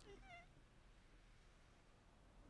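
Near silence: room tone, with one faint, brief high-pitched wavering call near the start.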